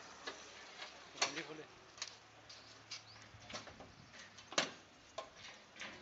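Irregular sharp clicks and knocks, about ten in all, with two louder ones about a second in and near the end: the key, latch and metal cover panel of a petrol-pump fuel dispenser being worked to open it.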